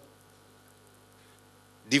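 Steady low electrical mains hum through the microphone feed, with a man's voice starting up again near the end.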